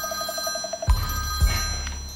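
A telephone ringing, a rapid trilling ring that lasts under a second, followed by a few low thumps.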